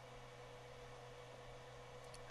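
Near silence: room tone of faint steady hiss with a low hum.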